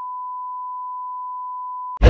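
TV colour-bar test tone: a single steady high beep held without change, cutting off suddenly at the end. It is used here as an edit transition.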